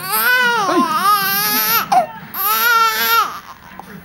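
An 18-day-old newborn baby crying: two long, wavering wails, the second coming after a short breath about two seconds in.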